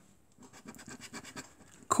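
A scratchcard's coating being scratched off with a metal scraper: a run of short, faint scraping strokes, several a second, starting about half a second in.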